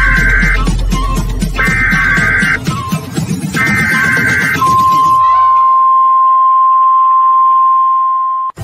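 Countdown-timer beeps over a music track: three one-second beeps about two seconds apart. They are followed by one long, steady, lower-pitched beep as the music cuts out.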